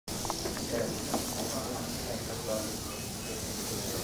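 HO-scale slot cars racing round a multi-lane track: a steady high hiss of their small electric motors and tyres, with people talking in the background.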